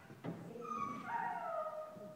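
A dog whining: high, drawn-out whines lasting about a second and a half, the later one sliding down in pitch, with a short tap just after the start.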